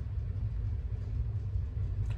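Steady low background rumble with a faint hiss above it; no voice or other distinct event.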